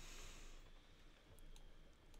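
Near silence with a few faint computer mouse clicks while a 3D model is being rotated and adjusted on screen, and a soft hiss in the first half second.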